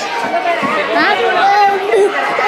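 Voices talking over one another: chatter of several people, adults and children.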